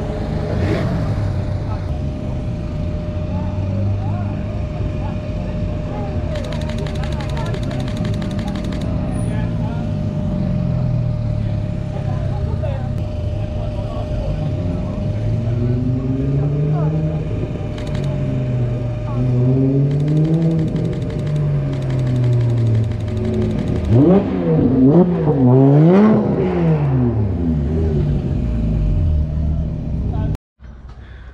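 Car engines revving up and easing off as cars drive past one after another. Near the end a car revs hard several times in quick succession, the loudest part.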